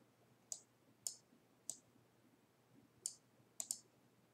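Computer mouse clicking: six short, sharp clicks spread over a few seconds, the last two in quick succession, against near silence.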